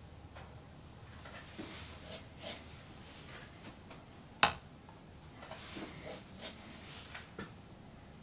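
Faint soft scrapes of a small metal palette knife working wet acrylic pouring paint on a canvas, with one sharp click a little past the middle.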